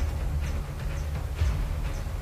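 Faint rustling and crackling of dry bamboo leaves as a man lies reaching into a crab burrow, over a steady low rumble.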